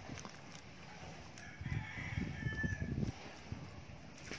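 A rooster crowing once, faintly, a single call of about a second and a half starting shortly after the first second. Soft rustling and bumps of hands handling a newborn puppy on a blanket sound underneath.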